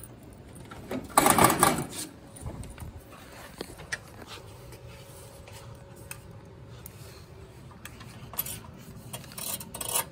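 Small metal screws and a hand wrench clinking and rattling together, loudest in a clatter about a second in. Then scattered light clicks and scrapes of metal as the screws are fitted and turned up into the printer's base from underneath.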